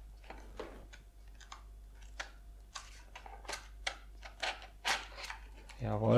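Moulded plastic packaging tray being handled as a wireless charging pad is lifted out of it: scattered light clicks and plastic crackles, a few to each second.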